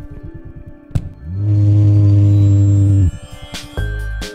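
Male Habronattus clypeatus jumping spider's courtship vibrations, picked up by a laser vibrometer and made audible: a rapid run of low thumps, then, after a click, a loud steady low buzz lasting nearly two seconds.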